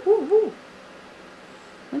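African grey parrot giving three quick, low hoots in a row at the start, each rising then falling in pitch.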